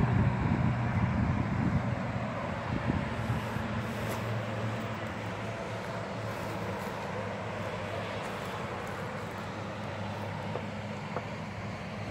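Steady road-traffic noise with a low engine hum, easing off slightly over the first few seconds.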